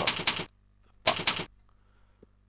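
Computer keyboard typing in two quick runs of keystrokes, the second about a second in.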